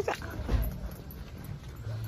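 A voice's rising call breaks off right at the start, then a dull thump about half a second in and a low steady hum while someone walks with the phone, the steps and handling knocking on the microphone.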